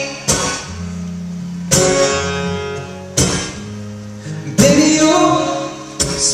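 Acoustic guitar strummed live, four single chords struck about a second and a half apart and left ringing, with a man's singing voice coming back in near the end.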